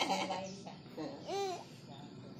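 A short high-pitched vocal call that rises and falls in pitch, about one and a half seconds in, after the tail end of a spoken word at the start.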